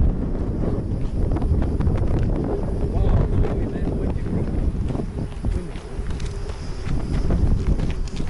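Wind buffeting the microphone in a heavy, fluttering rumble, with footsteps crunching on loose gravel.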